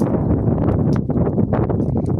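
Wind rumbling on the microphone over water lapping and slapping against a small boat's hull, with many small knocks and splashes through a dense low noise.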